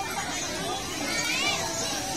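Crowd of children shouting and calling out as they play in the water, many voices overlapping, with one high rising-and-falling squeal about a second and a half in.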